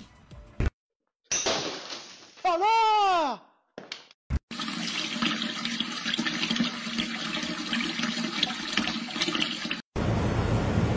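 A short pitched sound that swoops up and then down, then from about four and a half seconds in a steady rush of running water.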